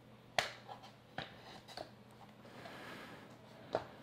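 Silicone rubber bumper case being pulled off an external hard drive: a few sharp snaps as the stretched rubber comes free, the loudest about half a second in and another near the end, with soft rubbing between them.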